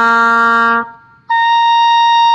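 Oboe sustaining a low note that ends just under a second in. After a brief pause it starts a high held note.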